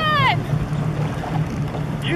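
Motorboat engine idling with a steady low hum while the boat waits for a fallen water-skier; a short voice with falling pitch comes right at the start.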